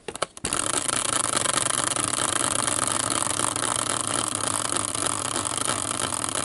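Homemade caster-wheel prize wheel set spinning by hand with a couple of knocks, then spinning fast on its axle with a steady noise that starts about half a second in.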